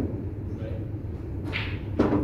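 Pool balls rolling across the cloth just after a shot, with a brief sharp sound about one and a half seconds in as the blue object ball reaches the corner pocket.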